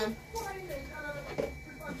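Faint voices of people talking in a small room, with one short knock about one and a half seconds in.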